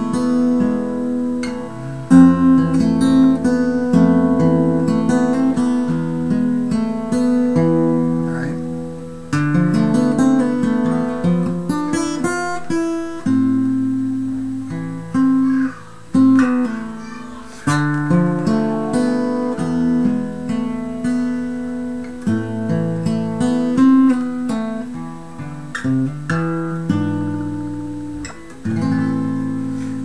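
Steel-string acoustic guitar in DADGAD tuning with a capo, played solo in a classical-sounding minor-key piece: chords and single notes ring out in phrases, with a few brief pauses. Played in G minor shapes, the capo makes it sound in A minor.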